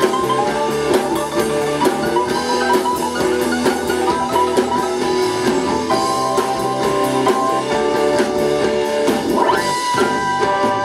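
Live rock band playing an instrumental passage on electric guitar, bass guitar, synthesizer keyboard and drum kit, with quick melodic runs over steady drumming.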